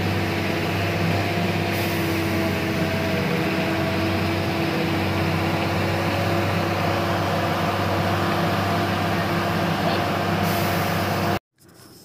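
Steady engine hum and road noise inside a moving bus on a mountain road, cutting off abruptly near the end.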